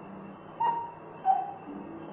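A bird calling in the background: a short higher note about half a second in, then a lower note, over a steady hiss.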